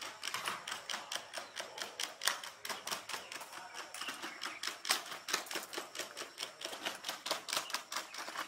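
Light, rapid, uneven clicking and tapping from a Unitree Go2 quadruped robot dog walking on its front legs: feet tapping on stone steps, with clicks from its leg joints.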